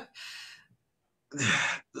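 A man's breathy sigh as his laughter trails off, followed about a second later by a second, voiced sigh.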